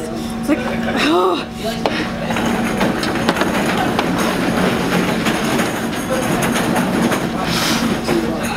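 Restaurant room noise: a dense wash of background din with a steady low hum under it, and a brief voice about a second in.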